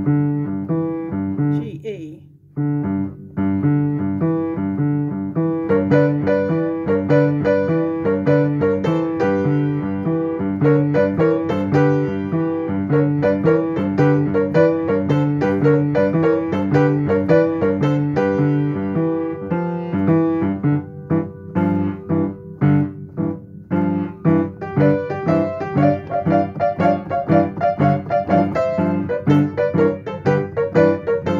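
Upright piano playing a blues boogie in G: a steady repeating pattern in the bass under right-hand two-note chords in thirds (G–B, A–C, B flat–D flat, B–D, C–E, D–F), with a brief dip in loudness about two seconds in.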